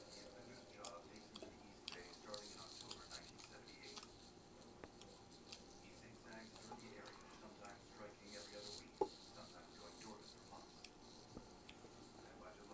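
Quiet eating sounds: chewing and wet lip smacks, with soft squishing of rice and stewed pork mixed by hand, and one short sharp click about nine seconds in.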